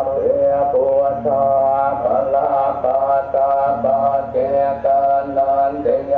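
Buddhist monks chanting Pali blessing verses in unison: a steady recitation on held pitches, broken into short syllables.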